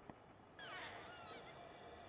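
A single bird call about half a second in: a harsh, wailing cry whose pitch falls over about half a second, heard faintly.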